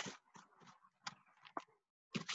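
Near silence, with a few faint, short, scattered sounds of a person moving barefoot on a foam mat.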